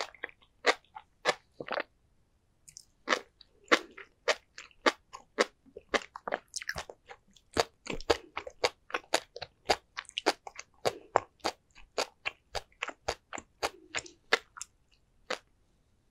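Close-miked chewing of sea grapes and flying fish roe: a run of sharp little pops, about two to three a second, as the beads burst in the mouth. The pops pause briefly after about two seconds and thin out near the end.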